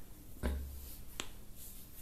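Two short, sharp clicks in a pause in a quiet room, about half a second and just over a second in; the first carries a low thump.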